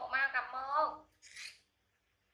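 Baby macaque giving one wavering, high-pitched cry about a second long while a T-shirt is pulled over it, followed by a short hiss. The cry is a sign of protest at being dressed.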